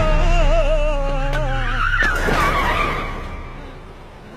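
Soundtrack music with wavering held notes, cut off about two seconds in by a car's tyres squealing under hard braking; the squeal fades within about a second.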